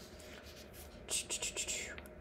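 Paper pages of a paperback guidebook rustling as they are turned and flattened by hand, in a quick run of short rustles starting about a second in.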